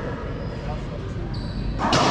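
Racquetball being struck and bouncing off the walls of an enclosed court, echoing, with a loud sharp crack near the end that rings on in the court.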